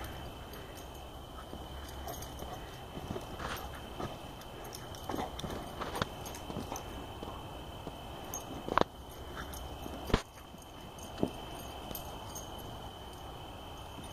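A dog playing with a ball on grass: scattered soft knocks and thumps, the two loudest about nine and ten seconds in. A faint steady high tone runs underneath.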